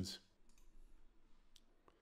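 Near silence between narrated sentences, with a few faint, short clicks, the clearest near the end.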